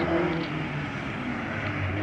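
Ford Escort Mk2 rally car's engine running as the car drives along the circuit, a steady engine note.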